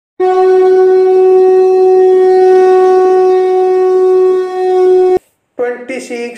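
Conch shell (shankha) blown in one long, steady, loud note of about five seconds, which cuts off abruptly.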